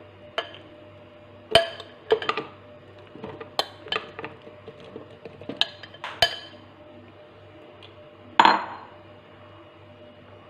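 A steel spoon clinking and tapping against a plastic blender jar as banana slices are spooned in: about nine irregular sharp knocks, the loudest about eight and a half seconds in.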